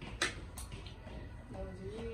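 Faint talk in a room, with two short sharp clicks in the first second.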